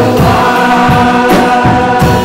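Live worship band: several voices singing together over strummed acoustic guitar, with a few percussive hits.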